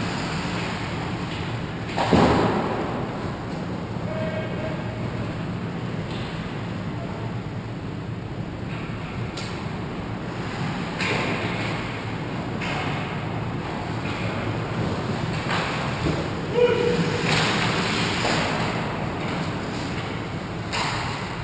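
Ice hockey play in a rink: skates scraping the ice, with a sharp knock that rings in the arena about two seconds in and another near the end, over a steady low hum.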